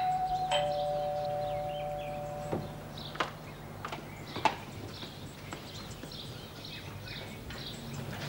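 Two-tone doorbell chime, ding-dong: a higher note, then a lower note about half a second later, both ringing on for about two seconds before fading. A few light clinks of china follow.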